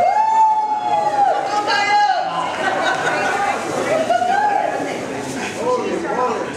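Women's voices calling out a cheer in long, drawn-out notes that rise, hold and fall, the longest just over a second near the start and a shorter one past the middle.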